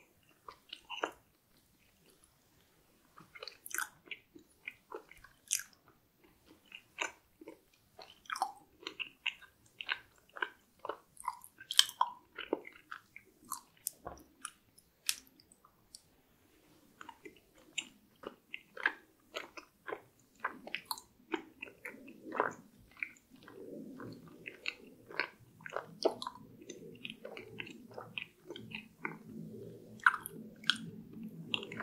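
Close-miked mouth sounds of eating a soft chocolate dessert off a skewer: biting and chewing, a run of short sharp wet clicks with a brief lull near the middle before the next bite.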